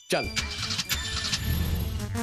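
Cartoon dash-off sound effect: a rushing, engine-like rev that builds toward the end as characters zoom away at speed.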